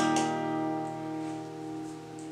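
Capoed acoustic guitar with a C chord strummed at the start, the chord left ringing and slowly fading away.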